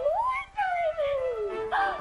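A single drawn-out howl that rises quickly, then slides slowly down in pitch for about a second, over background music.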